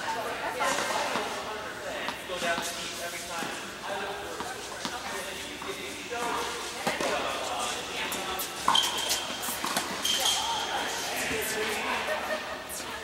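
Tennis balls being hit with rackets and bouncing on an indoor hard court, echoing in a large hall, with voices in the background; the sharpest, loudest hit comes about nine seconds in.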